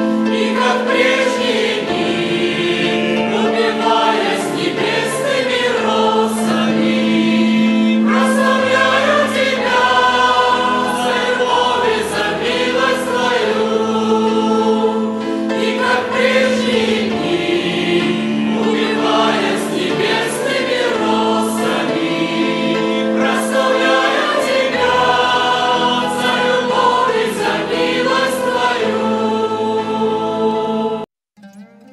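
Group of voices singing a slow Russian Christian hymn together over held accompaniment chords.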